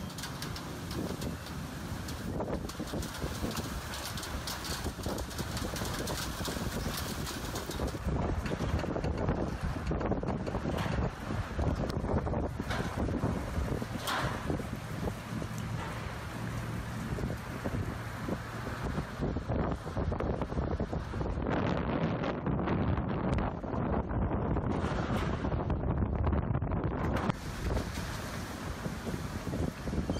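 Gusty storm wind buffeting the microphone: a heavy, rumbling rush that swells and falls.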